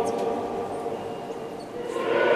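Church choir's sung chord dying away in a long, echoing reverberation during a pause between phrases, with the choir coming in again near the end.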